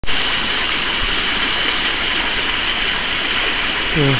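Steady rushing of water from an inlet jet pouring into a pool.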